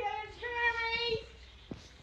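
A person's voice singing one high, steady note, held for about a second and then fading out.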